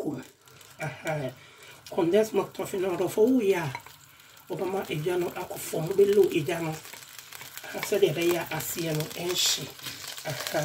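A person talking over margarine melting in a nonstick pan, with a soft sizzle and the scrape of a wooden spatula stirring it.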